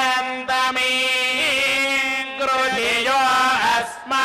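Devotional chanting by a single voice in long held notes that waver and bend in pitch, with short breaks between phrases.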